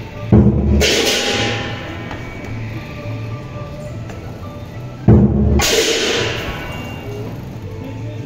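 Chinese dragon-dance percussion: a big drum beating steadily with clashing cymbals, swelling into two loud crashes, about a second in and again about five seconds in, each ringing away over a couple of seconds.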